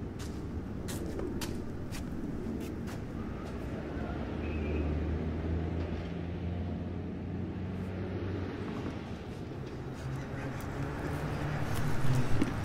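Urban street ambience: a steady low rumble of traffic, with a few faint clicks in the first three seconds and a deeper engine hum swelling up in the middle.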